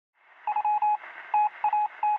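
Telephone-line style sound effect: a thin hiss with a run of short and longer electronic beeps at one steady pitch, starting about half a second in.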